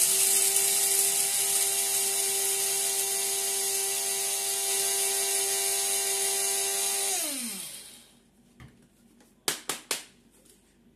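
Electric blade coffee grinder running steadily, grinding coffee beans with a motor whine and a gritty hiss. About seven seconds in it is switched off and the pitch falls as the blades spin down. A few short knocks follow near the end.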